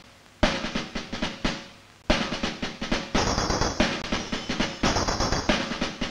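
Soundtrack music built on rapid snare drum rolls and drum beats. It drops out briefly at the start and again just before two seconds in, then comes back fuller.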